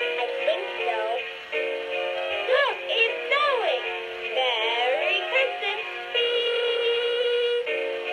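Musical Christmas decoration playing an electronic Christmas tune with a synthetic singing voice, the melody swooping up and down in pitch, then settling into a long held note near the end.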